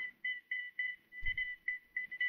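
A rapid string of short, same-pitched electronic beeps from a communications console, coming irregularly about four or five a second: the signal of an incoming hotline call. A soft low thud sounds about halfway through.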